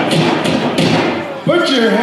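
Pow wow drum struck in steady beats, with high-pitched group singing over it. A loud voice comes in about one and a half seconds in.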